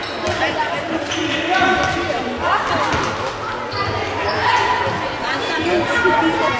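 A futsal ball being kicked and bouncing on a wooden sports-hall floor, with voices calling out, echoing in the large hall.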